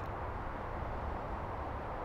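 Steady, faint background hum and hiss, with no distinct clicks or tones.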